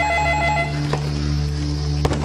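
Electronic telephone ringer trilling, warbling rapidly between two pitches, cutting off about half a second in; a click follows about a second in as the handset is picked up. A low steady musical drone runs underneath.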